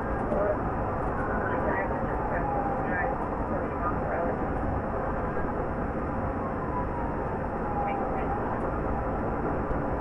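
Police cruiser driving at highway speed in pursuit, heard from inside the car: a steady rush of engine, wind and tyre noise, with faint tones that slowly slide in pitch.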